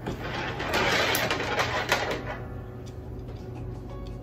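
Scratchy rustling and small clicks of a coiled sensor cable and a small plastic sensor being handled, loudest for the first two seconds or so and then quieter.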